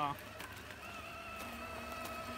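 A steady, even whine from a radio-controlled model semi truck's electric motor and gearbox as it tows another model truck, starting just under a second in.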